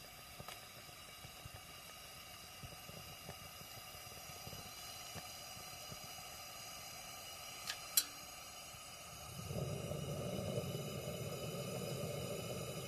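Camping lantern burning: a steady hiss with faint scattered crackles and two sharp clicks a little past the middle. About three quarters of the way through, a louder, lower rush of noise swells in.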